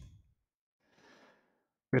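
A faint breath out by a man close to the microphone, lasting under a second, in a short pause between words.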